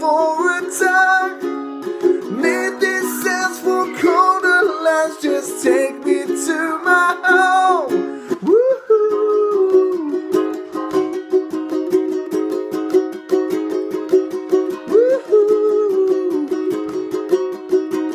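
Ukulele strummed in a steady rhythm, with a wordless melody line gliding over the chords through the first half and dropping away about halfway through.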